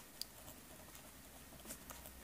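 Faint scratching of a ballpoint pen writing on notebook paper, with a light click about a quarter second in and a few small scratches near the end.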